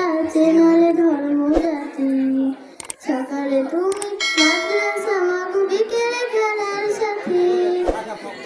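A high solo voice singing a Bengali Islamic gojol in long held, bending notes, with a short break about three seconds in.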